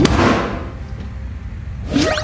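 A sudden thump from the episode's whack-a-gopher game as the gopher is hit, trailing off in a fading whoosh, then quick rising sound-effect sweeps near the end as the gopher pops up again.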